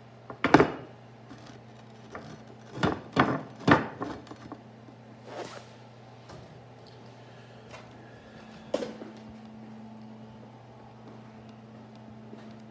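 A 3/4-inch steel bar knocking against a wooden workbench top as it is handled and set down: a sharp knock about half a second in, three more close together around three to four seconds, and another near nine seconds.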